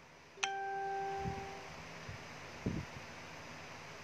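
A single bright ding about half a second in, a clear pitched tone that rings for just over a second before fading, followed by two soft low thumps.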